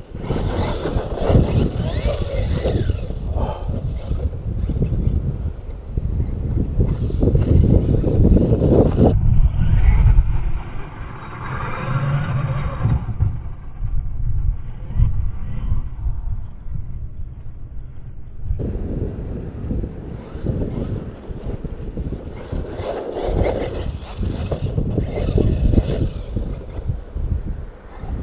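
Wind buffeting the microphone, with the brushless electric motor of an Arrma Talion RC truck whining as it speeds up and slows down in the distance.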